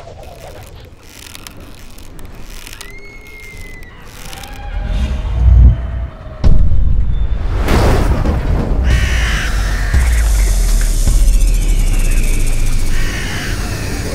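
Designed logo sting: a swell that builds for about five seconds into a heavy boom, a brief cut, and a second booming hit. A low sustained rumble follows, with high falling bird-like cries over it, before it drops away near the end.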